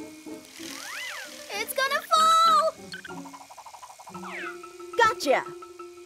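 Cartoon sound effects over children's background music: a whistle-like glide that rises and falls about a second in, then louder pitched effects, with a downward glide later and a short exclaimed 'Yeah' near the end.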